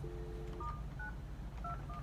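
Telephone dial tone for about half a second, then the DTMF tones of four keypresses as a number is dialled on a SIP phone. The dialled string begins with star-nine, a feature-access prefix that Session Manager's adaptation strips from the request URI.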